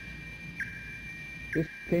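Steady high-pitched electronic whistle on an old lecture recording, dipping briefly to a lower pitch about once a second, over a low hum. A man's voice comes in briefly shortly before the end.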